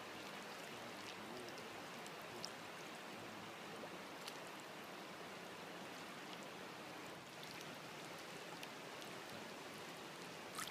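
River water flowing over stones at the bank, a faint steady rush with a few small ticks of drips or splashes.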